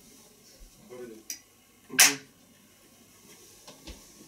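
A single sharp clap about halfway through, short and loud against a quiet room, with a few low murmured words just before it.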